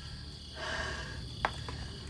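Crickets chirring steadily in the background, with a short breathy gasp about half a second in and a single sharp click near the middle.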